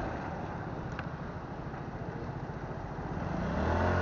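Motorbike engine running at low revs as it rolls slowly, then picking up and growing louder near the end.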